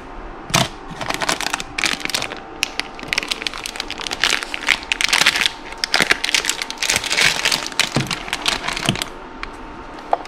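Clear plastic packaging crinkling and crackling unevenly as it is handled, falling away shortly before the end.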